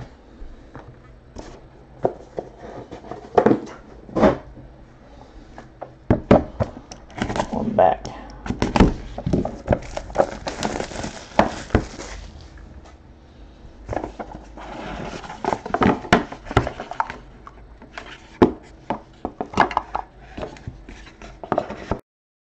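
Hands handling trading cards, plastic card holders and cardboard card boxes on a table: scattered sharp clicks and knocks, with two stretches of rustling in the middle.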